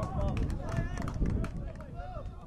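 Players calling and shouting to each other on a football pitch during a set piece, several short voice calls over a steady low rumble, with scattered sharp clicks.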